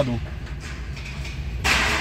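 Truck engine running low and steady, heard from inside the cab as the truck rolls slowly. A short hiss of air comes near the end.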